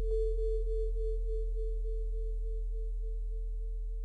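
A single held tone, like a struck singing bowl, from the closing of a political ad's soundtrack. It wavers about four times a second and fades slowly, over a steady low hum.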